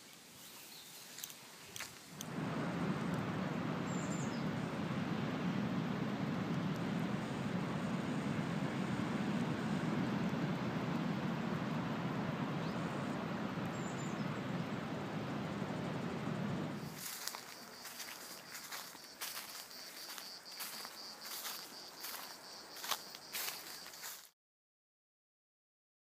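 Outdoor ambience: a steady rushing noise starts about two seconds in and stops abruptly about fifteen seconds later. A fainter stretch follows with a steady high-pitched tone and scattered clicks, then the sound cuts to dead silence near the end.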